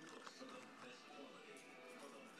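Near silence, with faint background voices and music.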